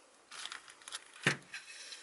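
Aluminium slide scraping along the aluminium extrusion bed of a mini wood lathe as it is moved by hand, with a sharp knock a little over a second in.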